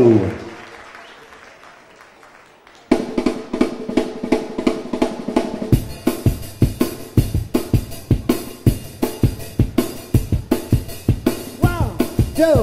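Live rockabilly band starting a song: after a fading announcement, drums and amplified guitars come in sharply about three seconds in with a steady beat, and the full kit with cymbals drives harder from about six seconds in. Singing starts right at the end.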